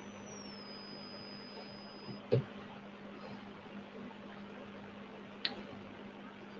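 Faint room tone with a steady low hum and a thin high whistle that drops a little in pitch and stops about two seconds in. A single dull knock comes a little after that, and a short sharp click comes near the end.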